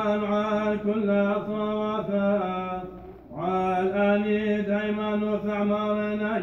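A man's voice chanting Church of the East liturgical prayer, reciting on one nearly constant note, with a short breath pause about three seconds in.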